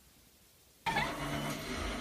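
Near silence, then just under a second in, a television's soundtrack starts abruptly at a much higher level and runs on as a dense, continuous mix.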